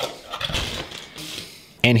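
Cardboard camera box being opened by hand: a soft scrape and rustle of the lid flap and packing as the dome camera is lifted out, fading after about a second and a half.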